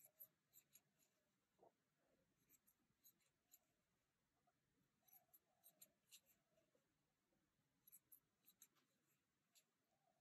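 Near silence, with faint small ticks coming in clusters of a few at a time: a metal crochet hook working cotton yarn.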